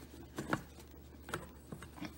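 A few light clicks and taps of a stainless steel steamer-pot lid being handled with oven mitts and lifted off the pot. The loudest click comes about half a second in.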